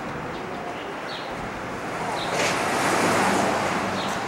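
City street traffic noise, with a passing car swelling to its loudest about three seconds in and fading again.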